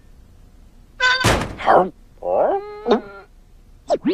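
Cartoon sound effects: a sudden thunk about a second in, followed by a wavering, voice-like sound that slides up and down in pitch, and quick pitch glides near the end.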